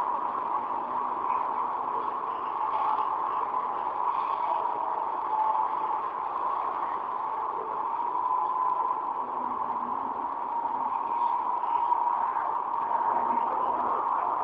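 Steady, muffled hiss concentrated in the midrange, with no distinct events.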